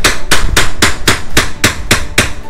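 A hammer striking quickly and evenly, about four sharp blows a second, nailing pine tongue-and-groove wall paneling.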